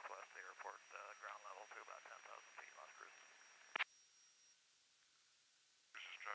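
Faint radio voice transmission heard over the aircraft intercom. It ends in a sharp click a little over halfway through, and near silence follows.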